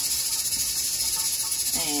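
Steady, high-pitched chirring of an insect chorus.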